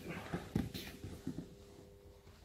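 Bare feet and bodies moving on a grappling mat with jiu-jitsu gi fabric rustling: a few soft thuds and scuffs as one grappler steps around his partner's legs and comes down onto him.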